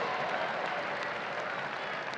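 Congregation applauding, easing off slightly as it goes.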